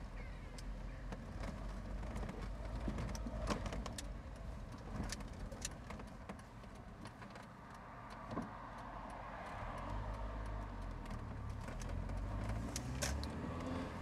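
MGF roadster driving slowly with the roof down: its engine running at low revs, with tyres crunching and clicking over gravel. The engine sound grows a little stronger near the end.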